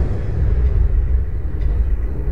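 A deep, steady low rumble with no clear pitch.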